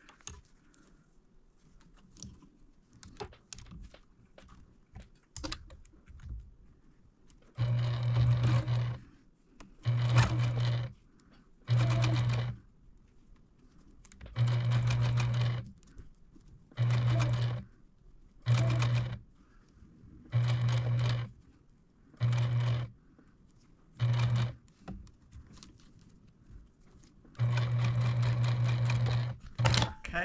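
Electric sewing machine top-stitching in about ten short runs of one to two seconds each, stopping and starting with brief pauses between. The last run near the end is the longest. Before the stitching, the first several seconds hold only a few faint clicks.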